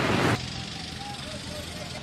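Street ambience: a loud rush of noise cuts off sharply about a third of a second in, leaving a quieter hum of traffic with faint voices in the background.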